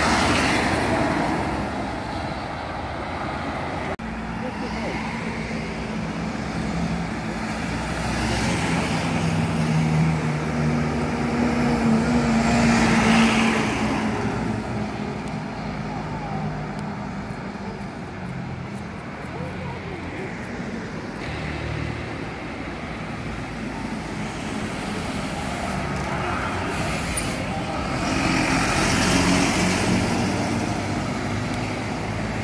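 Diesel city buses passing close by on a busy street amid steady road traffic noise, their engines droning as they pull past. The sound swells three times: near the start, about 13 seconds in, and near the end.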